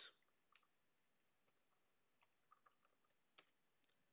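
Near silence: room tone with about half a dozen faint, scattered clicks from using a computer.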